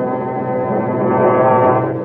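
Brass-led orchestral music holding one long, sustained chord, a musical bridge between scenes of a radio drama.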